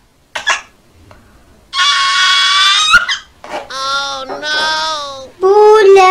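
A toddler crying in three long, high-pitched wails, each lasting over a second, starting about two seconds in.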